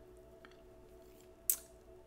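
A quiet pause with a faint steady room hum, broken by one short hiss about one and a half seconds in: a quick breath in before speaking.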